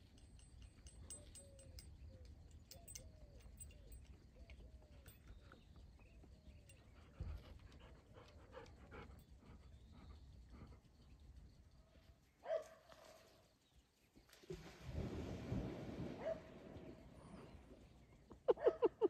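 A horse wading into a shallow pond, with about two seconds of faint water splashing near the end. Before that, a faint run of short whining calls.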